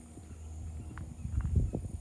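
Thunder rumbling low, swelling into a short run of rolling cracks about a second and a half in.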